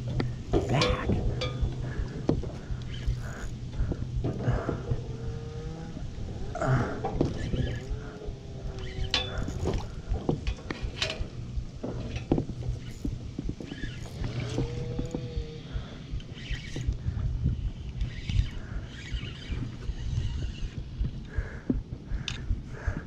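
Plastic kayak being worked under a metal dock lift while fighting a hooked fish: irregular knocks and bumps of rod, hands and hull throughout, with water sloshing. Three drawn-out wordless groans from the angler, about four, seven and fifteen seconds in.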